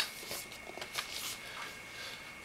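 Faint rustling and light handling of a cardboard product box as it is turned and stood upright, with a small click about a second in.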